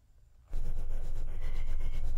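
Near silence, then about half a second in a steady low rumble starts abruptly and keeps going.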